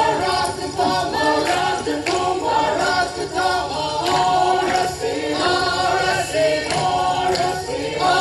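A group of voices singing a traditional Naga folk chant together without instruments, for a stage dance, with a few sharp knocks among the singing.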